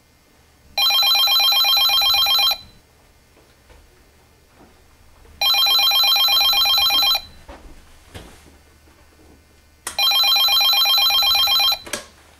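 Corded telephone's bell ringing three times. Each ring lasts about two seconds with a rapid trill, and the rings come a few seconds apart.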